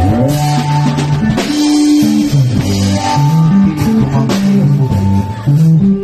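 Live band playing an instrumental passage: strummed guitar over a bass line moving from note to note, with a drum kit keeping the beat.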